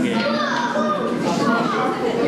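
Background voices of visitors, children's among them, talking and calling over one another, with no single clear speaker.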